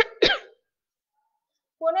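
A woman's throat-clearing cough, two short loud bursts, the second about a quarter second in, followed by a pause before she starts speaking again.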